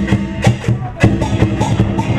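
Chinese lion-dance percussion: a big drum beaten in a steady rhythm with crashing cymbals over a ringing gong. The beating eases briefly a little over half a second in, then picks up again about a second in.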